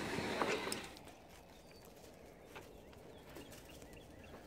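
Small dogs scrambling out through an opened back door: a short rush of noise in the first second, then faint outdoor quiet with a few soft taps.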